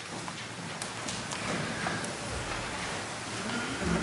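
Congregation sitting back down in the pews: rustling of clothes and paper, shuffling and scattered light knocks.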